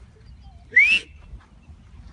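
A person whistles once, close by: a short, loud whistle that rises in pitch, with breath hiss around it.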